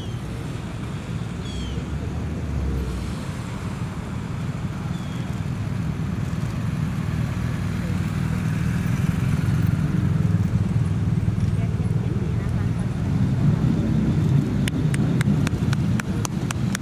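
Police motorcycles and other convoy vehicles driving slowly past at low revs, with a low engine and tyre rumble that swells as they come closer, over a bed of crowd voices. A quick run of sharp, evenly spaced taps starts near the end.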